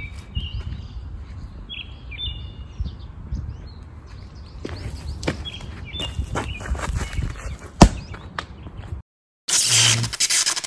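Outdoor wind noise with birds chirping and a few scuffs, then one sharp smack a little before eight seconds in, the loudest sound: a softball thrown into a cushion target in front of a net. Near the end, after a brief dead silence, a loud transition sound effect starts.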